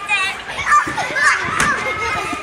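Young children's excited voices, high squeals and chatter, as they play together.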